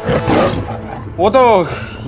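Dialogue: a man's voice says a couple of words in Hindi, with a pause before them.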